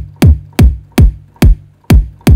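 Synthesized dubstep kick drum from the Kick 2 plugin repeating about two and a half times a second. Each hit is a sharp click that drops quickly in pitch into a short low thump. Its pitch curve is being dragged between hits, and the body ends up a little too low, lacking the thump that hits the chest.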